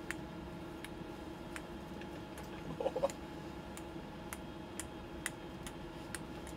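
Steady hum of the space station's cabin fans and equipment, with faint sharp ticks about every three-quarters of a second and a brief voice sound about three seconds in.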